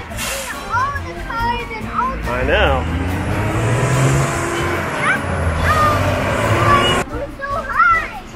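Road traffic passing on the multi-lane road below: a rush of cars that builds through the middle and cuts off abruptly about a second before the end, with short high calls over it.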